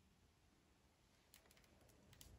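Near silence: room tone, with a few very faint clicks in the second half.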